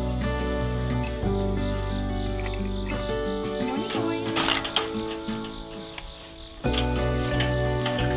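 Background music of sustained chords that change a little over a second in and again near the end. About four and a half seconds in there is a brief rattle.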